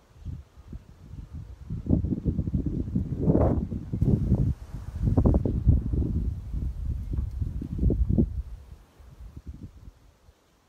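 Wind gusting across the microphone: a rumbling, uneven buffeting that starts just after the beginning, swells and surges for about nine seconds, and dies away near the end.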